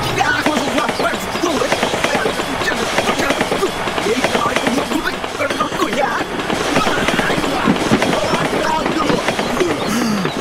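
A loud jumble of several voices overlapping one another, with no single clear line of speech.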